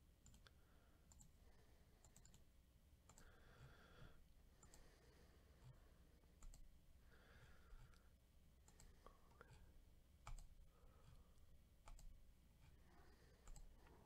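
Faint computer mouse clicks, scattered every second or so over near silence, as a web list randomizer is clicked again and again.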